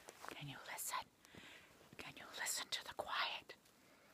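A woman whispering: a few soft, breathy phrases with hissing s-sounds and short pauses between.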